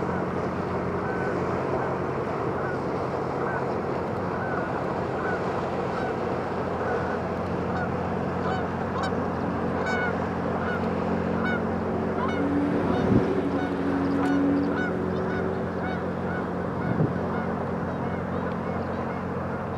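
Great Lakes freighter's diesel engines running with a steady low drone as it passes, while a bird calls over it in short repeated notes about twice a second. Two brief knocks sound in the middle and near the end.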